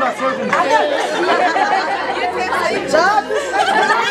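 Several women talking at once in lively, overlapping chatter, with no single voice standing out.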